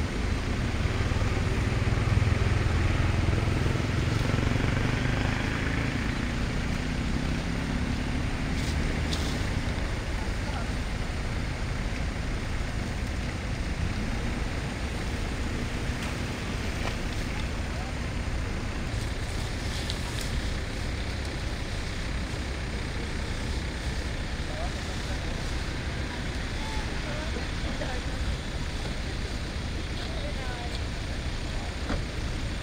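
Steady low rumble like an engine running, loudest in the first five or six seconds, with faint indistinct voices.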